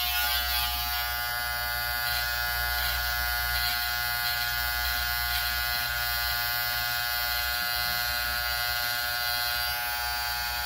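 Electric hair clipper running with a steady hum as it is worked through a man's hair at the sideburn and temple.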